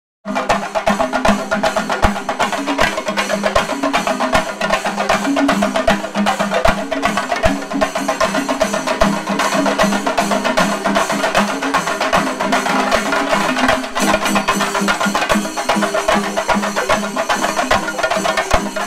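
A Shinkarimelam ensemble of many chenda drums, cylindrical wooden drums beaten with curved sticks, playing together in a fast, dense rhythm. The pattern changes about fourteen seconds in.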